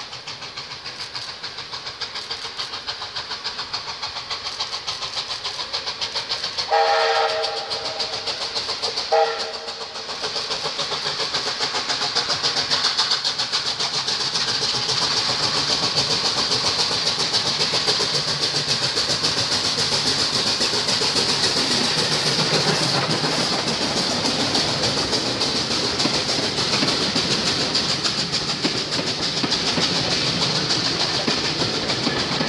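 Steam locomotive whistle: one blast of about a second, then a short toot, followed by the train approaching and passing close with a steady rumble and the clickety-clack of carriage wheels over the rail joints, which grows louder and holds through the second half.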